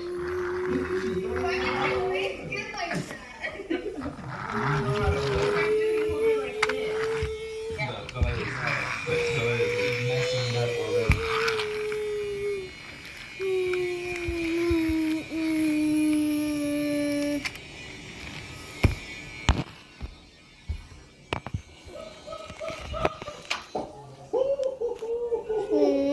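A voice humming four long held notes, each sliding slowly lower in pitch, with a few sharp clicks between them; it falls quieter with scattered knocks for the last several seconds.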